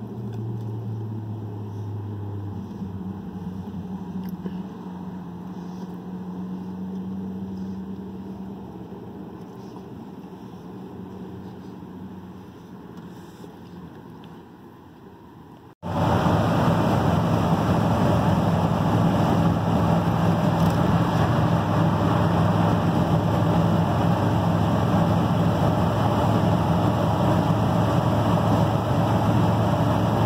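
A pickup truck heard from inside its cab: a fairly quiet low vehicle hum while parked, then about halfway through a sudden change to loud, steady engine and road noise as the truck cruises on the highway.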